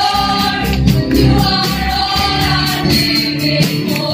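Gospel praise and worship song: a woman sings lead through a microphone over amplified music with a steady percussion beat, and other voices sing along.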